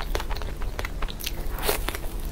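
Close-miked mouth sounds of chewing and biting into a cream puff with a crisp choux shell and heavy cream filling: irregular crackly crunches, with a louder bite near the end.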